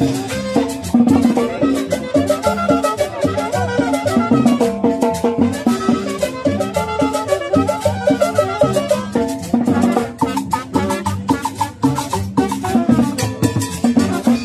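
Live Latin dance music from a street band: a brass melody over a steady percussion beat.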